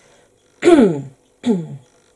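A woman clearing her throat twice: two short voiced sounds, each falling in pitch, the first the louder.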